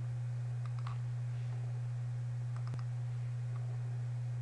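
A few faint computer mouse clicks, about a second in and again near three seconds, over a steady low electrical hum.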